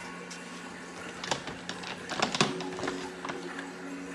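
A few light clicks and knocks of small objects being handled, one about a second in and a quick cluster past the middle, over a steady low hum.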